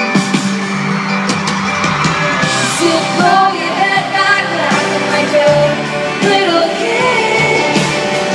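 A live pop song with a sung lead vocal over the band, heard through the stadium sound system from within the crowd.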